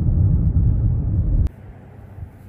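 Steady low rumble of a car driving along a road, road and engine noise. It cuts off suddenly about three-quarters of the way through, leaving a much quieter background.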